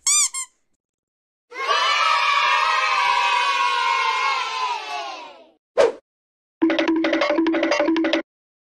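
A string of separate sound-effect clips cut together with dead silence between them. First a short chirp, then a crowd cheering for about four seconds that fades away, a brief blip, and near the end a rhythmic run of beeping tones.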